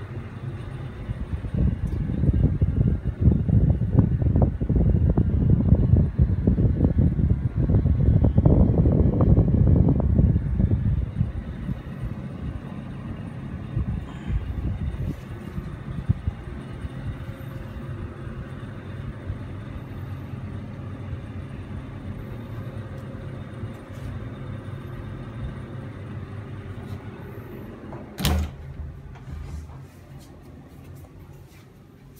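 Exhaust air from a clip fan blowing out of a window buffets the microphone with a loud, uneven low rumble for about the first ten seconds. A quieter steady fan hum follows. Near the end a door shuts with a single sharp bang.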